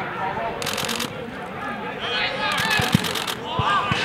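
Players' voices calling out across an outdoor football pitch, with two short dull thumps about three seconds in.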